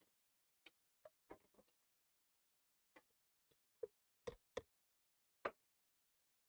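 Near silence broken by about ten faint, short clicks and taps at uneven spacing, with the loudest few in the second half.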